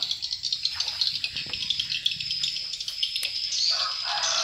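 Steady, high-pitched chirping and trilling from wildlife, made of rapid pulses.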